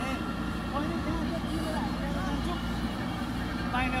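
JCB backhoe loader's diesel engine running steadily while its backhoe bucket digs into soil.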